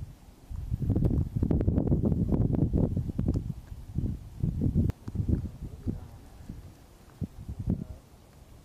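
Wind buffeting the microphone in irregular gusts, heaviest in the first few seconds, with rustling and a few light clicks.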